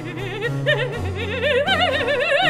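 Mezzo-soprano singing a sustained Baroque line with wide vibrato, stepping up in pitch about one and a half seconds in. Underneath are steady low bass notes from the violone and harpsichord continuo.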